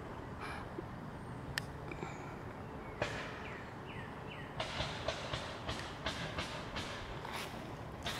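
Faint rustling and crackling of pea plants and dry leaves as they are handled and moved through. The crackles come as a few isolated clicks at first, then as an irregular run of them from about halfway. A few short, high, falling chirps come just before the run starts.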